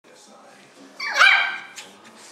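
Small white puppy giving one high-pitched bark about a second in, followed by a short click.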